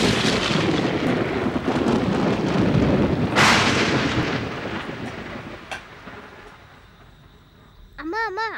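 Two loud claps of thunder, one at the start and one about three and a half seconds in, each rolling on and dying away over several seconds.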